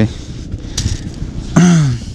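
Low rumbling wind noise on the microphone, with a short sharp click a little under a second in and a man's brief vocal sound, falling in pitch, near the end.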